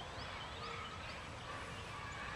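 Faint outdoor ambience with a few distant bird chirps.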